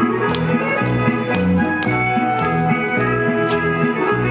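Norwegian folk-dance tune for a clap dance, with held pitched notes over a bouncing bass line. A few sharp claps sound over the music.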